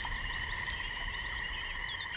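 A steady, high-pitched chorus of small calling animals, with short chirps scattered over it.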